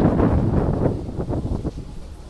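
A gust of wind buffeting the microphone: a rough, uneven rush, loudest at the start and dying away about a second and a half in.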